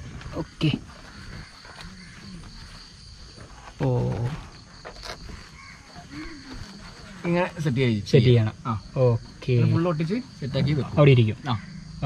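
A man's voice speaking in short bursts, mostly in the second half, over a steady high chirring of crickets; a few light knocks sound in between.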